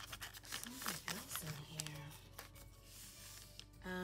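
Paper and plastic rustling and scraping as planners and plastic pouches are pushed and shifted by hand inside a packed fabric tote bag, busiest in the first two seconds and then trailing off.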